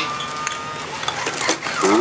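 Robosapien RS Media toy robots moving: electric gear motors whirring, with light plastic clicks and clatter and a faint steady whine that stops about halfway through.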